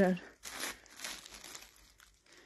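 Clear plastic wrapping on packaged cushion covers crinkling faintly a few times as it is handled.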